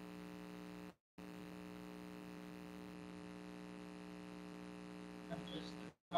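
Steady electrical hum, a low buzz made of several even tones, that cuts out completely for a moment about a second in. A faint short sound comes just before the end.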